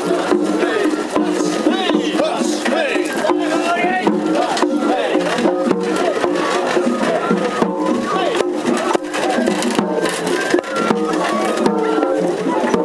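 Festival float music, matsuri-bayashi: drums struck on the float in a steady rhythm with repeated pitched notes and voices, heard close up amid a crowd.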